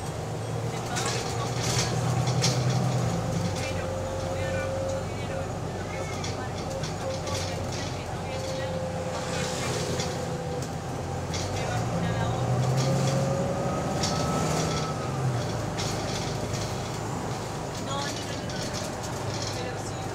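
Inside a bus on the move: the engine and drivetrain run with a whine that drifts up and down with speed. The engine note grows louder twice, about a second in and again about twelve seconds in, as the bus pulls.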